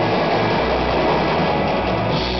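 Live garage rock band playing loud: a dense, steady wall of electric guitar and keyboard over a low rumbling bass, without a clear drum beat.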